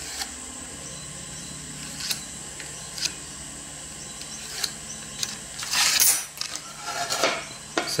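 Small clicks and taps of a steel rule and pencil working on a plywood template on a steel bench, then louder rubbing and scraping about six seconds in and again about a second later as the rule and board are moved across the bench. A steady hum runs underneath.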